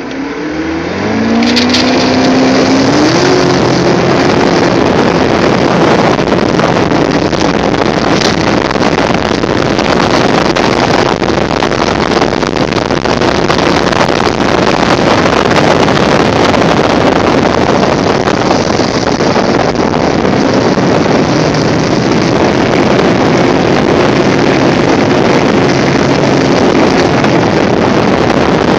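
16-foot Glastron runabout's engine throttling up, its pitch climbing in steps over the first few seconds, then running steadily at cruising speed. A heavy rush of wind and water over the moving boat runs under the engine note.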